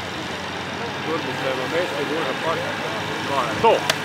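Portable fire pump engine running steadily, with men shouting in the background, louder near the end.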